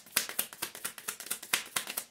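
A deck of tarot cards being shuffled in the hands: a quick, even run of sharp card slaps, about five a second.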